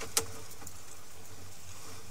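Steady low electrical hum with a faint hiss, broken by one short sharp click just after the start.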